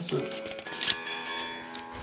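A single sharp click about a second in as the vintage guitar amplifier's control panel is handled, over faint sustained ringing tones.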